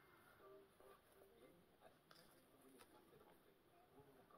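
Near silence, with faint, scattered soft ticks and rustles of a cord being untied from a handmade paper journal.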